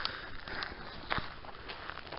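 Footsteps of a person walking on a gravel path, about two steps a second.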